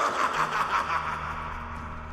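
A man's gloating villain laugh, a rapid run of 'ha-ha' pulses that fades out within about a second. A low steady hum comes in underneath about half a second in.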